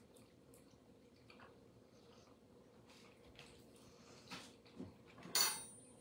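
Quiet handling of burrito pieces on a paper-towel-lined plate: faint scattered taps and clicks, a couple of small knocks, and a short louder rustling noise near the end as the pieces are set down.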